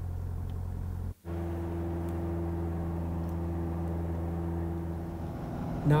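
Single-engine propeller airplane's piston engine droning steadily, heard from inside the cabin. The sound drops out briefly about a second in and comes back as an even drone with a steady hum.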